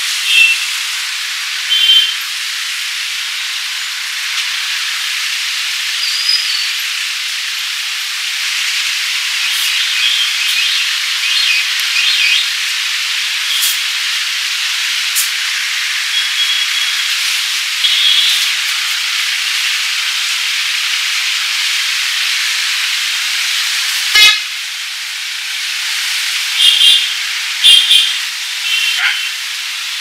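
Hands rubbing and kneading bare skin on the shoulders and neck during a head and body massage: a steady, thin friction hiss with brief high squeaks. A single sharp snap comes about 24 seconds in.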